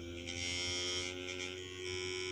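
Homemade pulse motor with a two-nail rotor shaft running steadily on its nail-point bearings, a steady hum.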